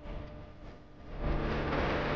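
Music dies away, then about a second in a loud, steady noise starts: an air-powered impact wrench running on a leaf-spring bolt.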